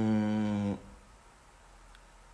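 A man's low, steady hum, one held note with closed lips, that stops abruptly under a second in.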